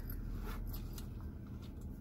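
Low steady hum of a car idling, heard inside the cabin while stopped in traffic, with a few faint clicks around half a second to a second in.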